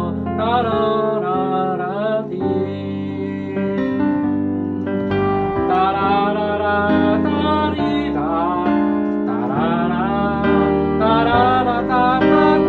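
Piano playing the chord accompaniment of a slow ballad, with a wordless sung melody that slides and wavers in pitch over the sustained chords.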